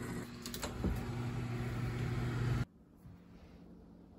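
Microwave oven running with a steady hum, with a few clicks near the start, heating honey to melt it; the hum cuts off suddenly after about two and a half seconds.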